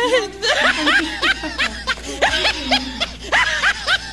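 Several women laughing and giggling in quick, overlapping bursts while music plays underneath.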